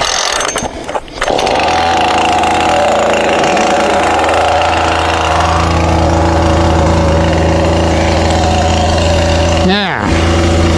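Husqvarna 440 two-stroke chainsaw being started: a few sharp knocks, then the engine catches a little over a second in and settles into a steady idle.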